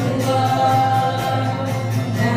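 Live worship song: women's voices singing together through a PA over acoustic guitar, with one long held note through the middle.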